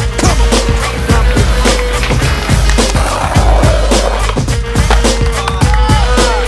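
Music with a steady beat, over skateboard sounds: urethane wheels rolling on paving and the board clacking and slapping down.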